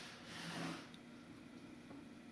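Faint, brief rustle of hands handling trading cards, fading within the first second to near-silent room tone.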